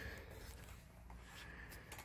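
Near silence: a faint low background rumble of outdoor room tone, with no distinct sound.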